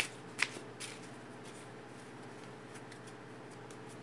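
A deck of tarot cards being shuffled by hand: three sharp card snaps in the first second, then quieter shuffling.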